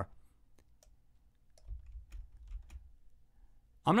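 Faint, scattered clicks of computer keyboard keys and mouse buttons, about eight in three seconds, with a brief low rumble near the middle.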